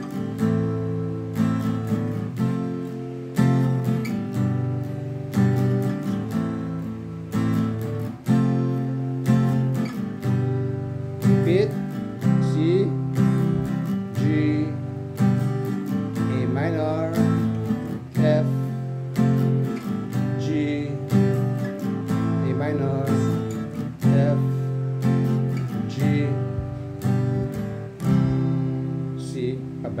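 Fender cutaway acoustic guitar strummed in a steady down, down-up, down-up pattern, changing chords every couple of seconds through a simple four-chord progression of C, G, A minor and F.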